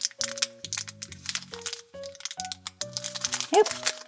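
Small plastic wrapper crinkling and crackling as fingers squeeze and pull at it, the packet not tearing open, over background music with steady held notes.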